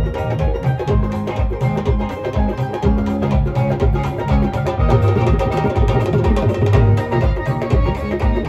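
Live Punjabi folk band playing an instrumental passage with no vocals: a melody over a steady drum beat, through the stage sound system.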